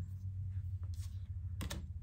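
Tarot cards being handled, giving a few light clicks and taps, over a steady low hum.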